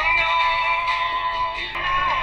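Recorded pop-rock song with a sung melody in long held notes over a steady backing. The notes change about three-quarters of the way through.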